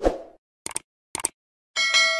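Sound effects of a like-and-subscribe animation: a pop at the start, two short clicks, then a bell chime with several ringing tones near the end.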